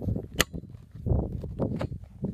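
A single sharp click about half a second in, then rustling, rumbling and a few small knocks as a camera is handled and taken off a spotting scope.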